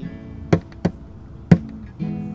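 A steel-string acoustic guitar is strummed with a pick. A chord rings on, and sharp percussive strokes land about once a second.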